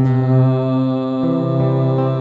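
Live Vietnamese song with a man's voice holding a long sustained note over acoustic guitar accompaniment. The lower notes shift about halfway through.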